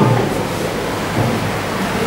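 Steady hiss of room noise in a short pause between words.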